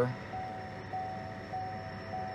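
A steady mid-pitched tone, broken by brief gaps about every half second, over a faint hiss.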